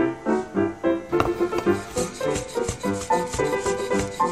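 Background music over a knife slicing softened shiitake mushrooms on a wooden cutting board, with short repeated strokes.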